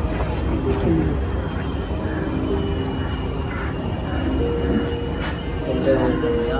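Indistinct voices of people talking over a steady low rumble of outdoor background noise.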